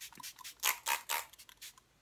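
Fine-mist pump sprayer of a Smashbox Photo Finish Primer Water bottle spraying onto a face, several short hisses in quick succession.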